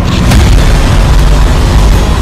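Sound design of a TV news segment's animated intro sting: a loud, sustained deep boom and rumble, with a brief swish about a third of a second in.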